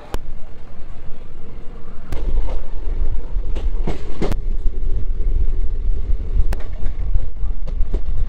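Indian passenger train running, heard from the coach doorway. A steady rumble grows heavier about two seconds in, with wind buffeting the microphone. Sharp clacks of wheels over rail joints come at irregular intervals, several of them close together around the middle.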